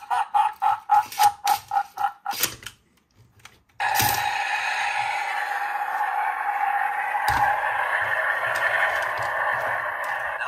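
Electronic sound effects from an interactive Buzz Lightyear figure's built-in speaker. First comes a run of rapid beeps, about four a second, for some two and a half seconds. After a short pause, a steady rushing rocket-blast sound starts about four seconds in and keeps going.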